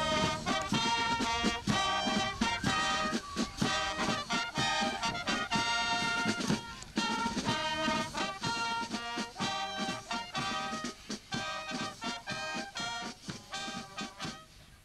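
A marching showband's brass and drums playing short, accented chords over a steady drum beat, with a brief break about seven seconds in.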